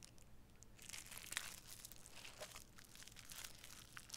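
Thin clear plastic wrapping crinkling in the hands as a metal cake-decorating piping tip is unwrapped, starting about a second in, faint and crackly.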